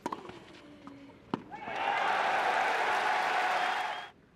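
Two sharp tennis ball strikes end a rally on a clay court, then a stadium crowd cheers and applauds loudly from about a second and a half in, cutting off suddenly at the end.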